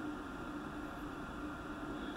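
Faint steady hiss with a low hum underneath: the background noise of the recording in a pause between spoken sentences.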